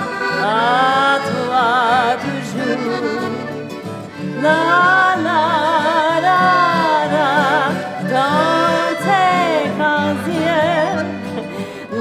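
A woman singing a melody with wide vibrato, accompanied by a piano accordion playing steady chords; her voice drops out briefly about four seconds in.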